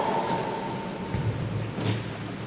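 Reverberant room noise of a large gym with a standing crowd. A held note carried over from just before dies away over the first second or so, and a low rumble follows.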